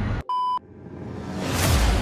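A short, steady electronic bleep lasting about a third of a second, then a whoosh sound effect that swells up to a peak near the end.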